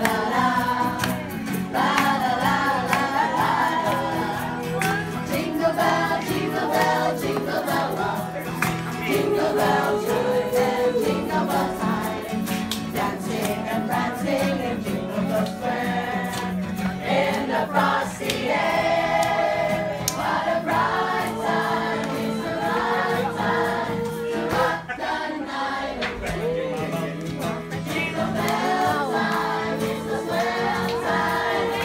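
A group of voices singing a Christmas carol together in chorus, over steady held accompaniment notes.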